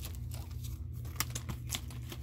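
Paper inner sleeve of a vinyl LP rustling and crinkling as the record is handled and slid about, with a few light scattered clicks.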